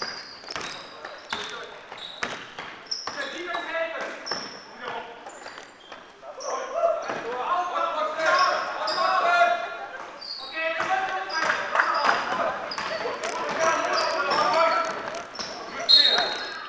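Basketball bouncing on a sports-hall floor with sharp, repeated knocks, mixed with short high shoe squeaks. Players' voices shout and call in the echoing hall, loudest from about halfway through.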